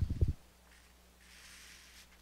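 A brief cluster of low thumps right at the start, then a faint rustle of a heat-transfer foil sheet being peeled back off a pressed shirt.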